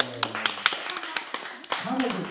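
Sharp taps about four a second in an even rhythm, with a person's voice talking over them.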